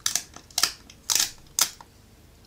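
A dust-removal sticker dabbed onto and lifted off a phone's glass screen, giving four short, crisp, sticky ticks about half a second apart.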